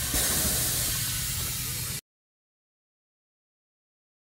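Aftermarket air suspension on a 2010 Mercedes-Benz C63 AMG dumping air from its bags to lower the car: a loud, steady hiss that stops abruptly about two seconds in.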